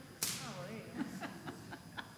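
A sudden swishing rustle a moment in, then faint voices and a few light knocks as people move about and settle.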